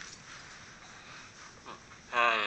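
Faint steady hiss of room and microphone noise, with a brief soft vocal sound near the end.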